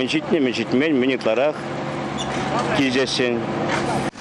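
Steady low hum of road-paving machinery running close by, heard under a man's speech.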